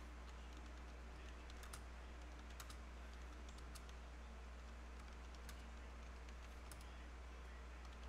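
Faint, irregular clicks of computer keyboard keys, a few scattered keystrokes with uneven gaps, over a steady low electrical hum.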